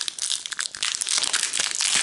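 Foil wrapper of a Pokémon trading-card booster pack crinkling and crackling as it is torn open by hand.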